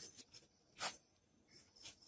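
Pen writing on paper, faint scratching strokes, the clearest about a second in.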